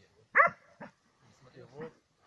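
A dog gives one sharp, high bark about a third of a second in, then a short, softer one. It is a dog that has just begged food and is pushing for more.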